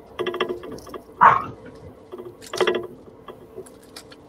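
Metal links and clasp of a vermeil bracelet set with dyed magnesite clicking and rattling as it is handled onto a wrist, in two quick runs of clicks, with a brief louder noise about a second in.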